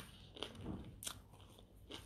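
Faint close-up chewing of crisp toast, with a few short crunches.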